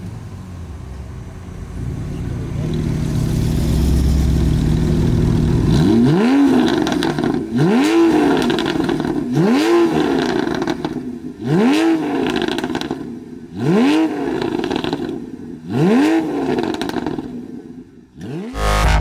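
Porsche 911 (991) 3.8-litre flat-six engines with aftermarket performance exhausts, stationary: a steady rev held for a few seconds, then about seven sharp throttle blips, one every second and a half or so, each rising and falling back quickly. The exhaust valves are closed at first and open for the later blips.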